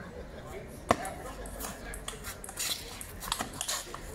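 Table tennis rally on an outdoor concrete table: sharp clicks of the ball off the bats and the table, the loudest about a second in with the serve, then several more hits later on.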